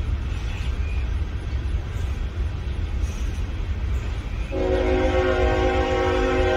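Slow-moving train rumbling low, then about four and a half seconds in its horn starts sounding a steady chord.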